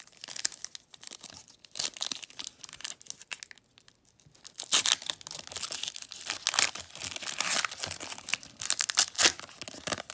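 Foil trading-card pack wrapper being crinkled and torn open by hand, with irregular crackling that grows busier and louder about halfway through as the foil is ripped apart.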